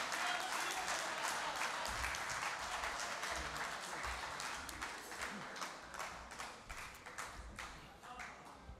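Audience applauding, dense at first and thinning to scattered separate claps as it fades toward the end.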